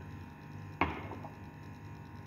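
A single short knock about a second in, over a faint low steady hum.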